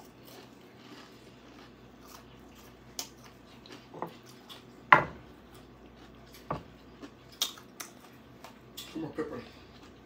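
Quiet eating sounds from someone eating deep-fried liver: scattered soft clicks and light knocks while she chews, with one sharp knock about five seconds in. Near the end comes a short hum of approval.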